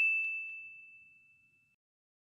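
Notification-bell 'ding' sound effect of an animated subscribe button: one high bell tone dying away over about a second, with a faint click a quarter second in.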